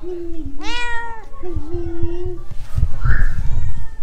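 Seal-point Siamese cat meowing at close range. A long, level, low call is followed about half a second in by a sharper meow that rises and falls, then another long, level call. Low bumps and a rustle come near the end.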